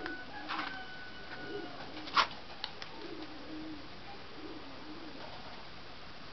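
Domestic pigeons cooing, low and wavering, in repeated calls, with two brief louder noises about half a second and two seconds in.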